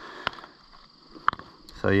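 Pieces of rock clicking and knocking together as they are picked up and handled, with a few short sharp clacks, the loudest about a second in.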